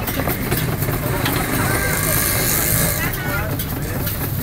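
A steady low engine-like rumble under faint background voices, with a brief high hiss about two seconds in.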